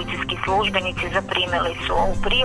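Speech with a music bed underneath.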